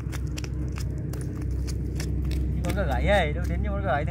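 An engine runs steadily with a low hum, and scattered light clicks sound over it. From about two-thirds of the way in, a voice wavers up and down in pitch.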